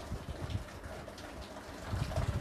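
A marker writing on a whiteboard, a few faint short strokes over a low room rumble.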